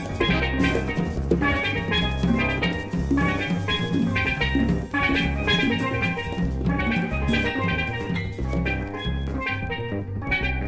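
Jazz ensemble playing at a steady pulse, with rapid struck steel-drum notes over drum kit and bass.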